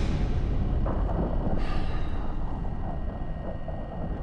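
A low, dark ambient drone from the film's sound design or score, with a deep rumble underneath and a few faint held tones, slowly fading.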